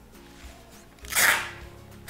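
Brown packing tape pulled off its roll in one loud rip about a second in, lasting about half a second, over steady background music.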